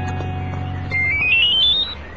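Background music holding a sustained chord, then about halfway through a mobile phone ringtone: a quick rising run of short electronic beeps, climbing step by step, that stops just before the call is answered.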